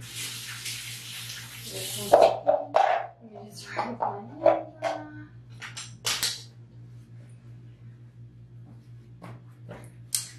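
A bathroom sink tap runs for about two seconds and is then shut off. It is followed by several short, sharp yelps in quick succession, the loudest sounds here, all over a low steady hum.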